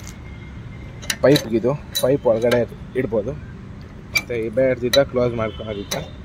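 Sharp metallic clinks of a hand working a wire latch hook on a small hinged steel flap of a truck's body panel. There are about half a dozen separate clicks.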